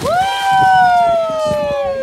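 A young girl's long, high scream that starts suddenly with a splash as she drops into the sea, then slowly falls in pitch.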